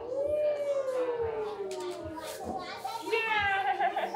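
A toddler's wordless voice: a long, slowly falling coo, then a higher-pitched squeal in the last second.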